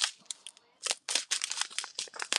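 Plastic zip-top bags of diamond painting drills crinkling as they are handled: a few crackles, a short lull, then a dense run of sharp crinkles from about a second in.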